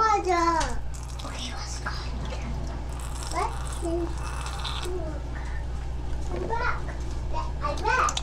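A child's voice in the background in short, high, gliding calls, over a steady low hum.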